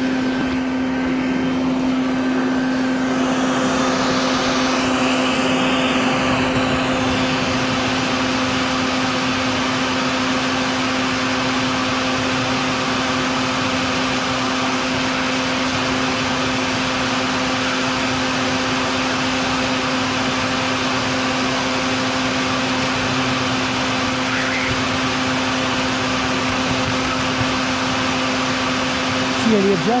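Vacuum running steadily, with a constant hum, as it sucks up bald-faced hornets at the nest entrance.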